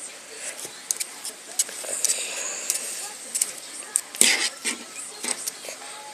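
Light rustling and scattered small clicks of body movement and handling noise, with one short breathy noise about four seconds in.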